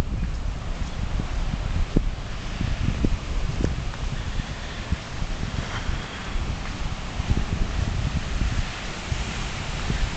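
Wind buffeting the microphone outdoors: an uneven, gusty low rumble with a steady hiss above it and a few soft knocks.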